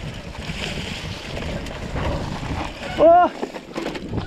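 Mountain bike rolling fast down a leaf-strewn dirt trail: steady wind buffeting the handlebar-mounted camera's microphone, over tyre rumble on dirt and leaves. About three seconds in comes a short, loud yell.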